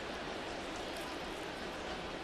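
Steady murmur of a baseball stadium crowd.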